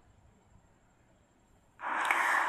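Near silence, then near the end a sudden loud breathy hiss: a person's breath on the microphone before speaking.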